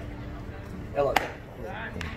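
A single sharp crack about a second in as the pitched baseball reaches home plate and the batter swings.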